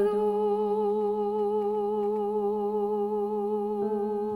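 Live octet music: a chord of long notes held steady, the upper ones wavering slightly in pitch, with a higher note joining near the end.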